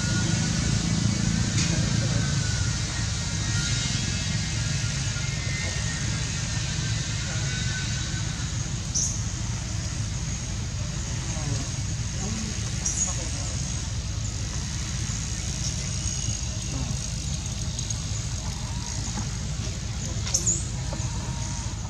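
Steady low rumble of outdoor background noise, with a few brief high chirps: one about nine seconds in and another about thirteen seconds in.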